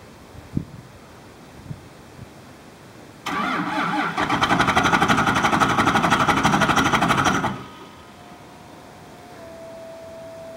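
Starter cranking the cold Cummins 5.9-litre 24-valve inline-six diesel of a Dodge Ram 2500 at −20 °C, a cold-start attempt. It starts about three seconds in with a rapid, even pulsing, grows louder about a second later, and stops abruptly after about four seconds, leaving a faint steady whine.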